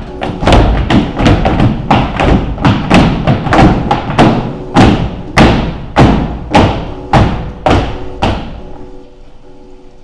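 Footsteps stomping on a stage floor in a steady walking rhythm. The rhythm slows in the second half and stops about eight seconds in, over a quiet sustained musical drone.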